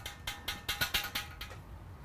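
A quick run of small sharp metallic clicks, about five a second, that stops a second and a half in, as the valve fitting on a stainless steel fermenter is worked by hand.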